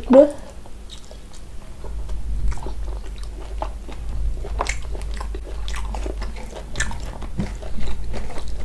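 Close-up chewing of a mouthful of mutton curry: many short, irregular wet clicks and smacks of the mouth. Near the end, fingers squish through rice on a plate.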